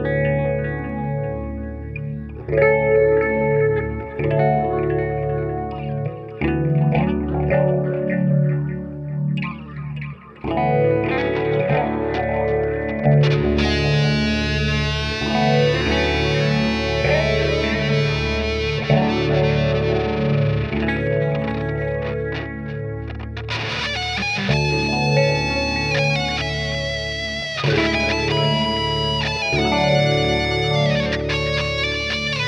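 Electric guitar improvising a lead line through effects with some distortion, over sustained low chords, with a brief drop about ten seconds in.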